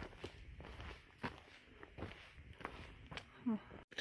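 Footsteps on a dirt trail: quiet, irregular steps, several faint scuffs and crunches.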